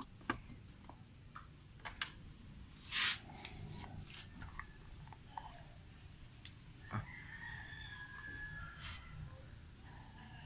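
Quiet handling of a plastic funnel and an engine-oil bottle at a motorcycle's oil filler: a few light clicks and a brief rustling scrape about three seconds in. A faint, drawn-out animal call sounds in the background near the end.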